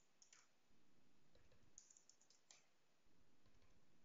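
Faint computer keyboard typing: a few soft, scattered key clicks over near silence.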